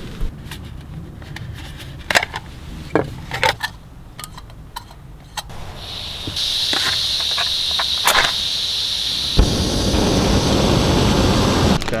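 Backpacking canister stove on an MSR IsoPro gas canister: clicks and knocks as it is handled and set up, then a steady gas hiss from about six seconds in. A sharp click follows, and about nine seconds in the burner lights suddenly and keeps burning with a steady, full low rush.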